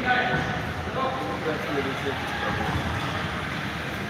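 Indistinct voices of people talking in a large sports hall, over a steady low rumble.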